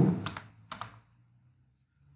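A few computer keyboard keystrokes in the first second, typing a short name, then quiet.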